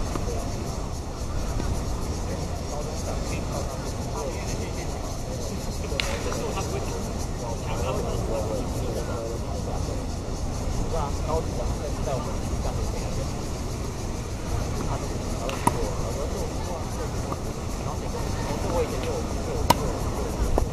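Tennis ball struck by rackets on an outdoor court: a few sharp, separate pops, the loudest just before the end. A steady low rumble and indistinct voices run underneath.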